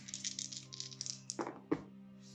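A handful of seven six-sided dice rattled in a cupped hand, then thrown onto a tabletop gaming mat, landing with two sharp knocks about a second and a half in.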